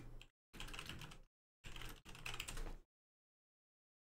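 Faint typing on a computer keyboard, in three short runs of keystrokes that stop about three seconds in.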